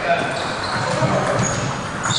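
Table tennis ball being served and struck, light knocks off the bats and table in a reverberant hall, with voices chatting in the background.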